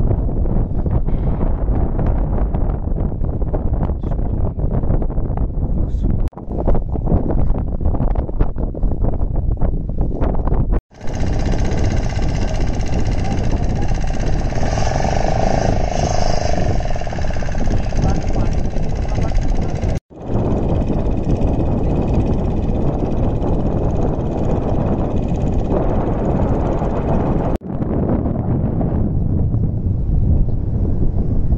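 Wind buffeting the microphone over open floodwater, a heavy steady rumble that cuts off abruptly several times where clips are joined. A middle stretch of about ten seconds is brighter and more hissy.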